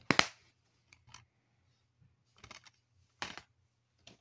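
Plastic DVD keep case snapped shut with a sharp click at the start, followed by a few lighter plastic clicks and knocks as the cases are handled.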